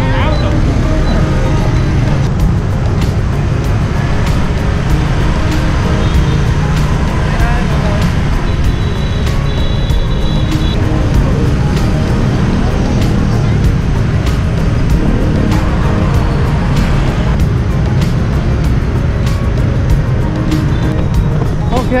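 Loud, steady rumble of motorbike and car traffic on a busy city street, heard from a rider rolling among it on freeline skates.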